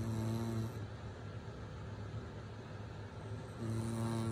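A woman snoring in her sleep with her mouth open: one short pitched snore right at the start and another near the end, about three and a half seconds apart.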